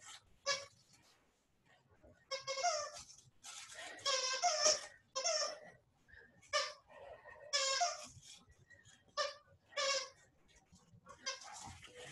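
A dog whining in about a dozen short, high-pitched bursts, some brief and some drawn out to about a second.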